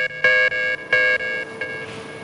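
Electronic warning alarm sounding in quick pulses, about three a second, at a steady pitch, growing weaker in the second half.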